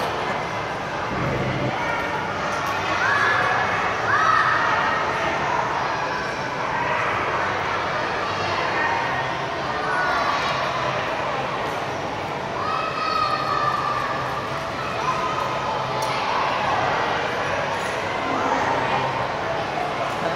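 Background hubbub of a busy indoor play hall: many children's and adults' voices chattering at a distance, with a few short higher children's calls about three seconds in and again around thirteen seconds.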